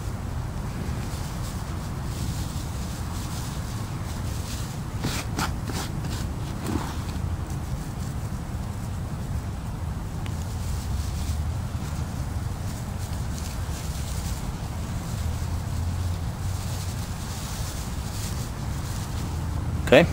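Steady low wind rumble on the microphone, with faint rustling of dry broom sedge fibres being handled and gathered by hand, and a few sharper crinkles about five seconds in.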